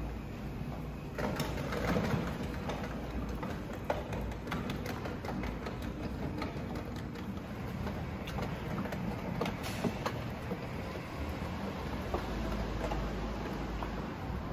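Autonomous delivery robot rolling over tiled floor and paving, a steady mechanical rumble with scattered clicks and clatter from the wheels.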